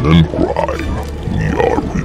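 Deep, dramatic trailer voice-over speaking over a steady low rumbling music bed.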